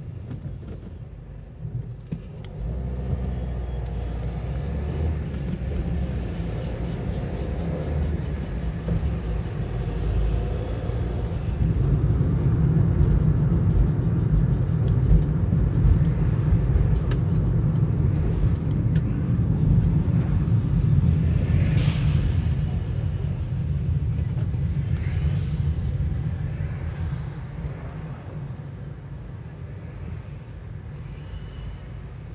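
Car engine and tyre noise heard from inside the cabin while driving: a low rumble that swells about halfway through and eases off near the end. A brief hiss comes about two-thirds of the way in.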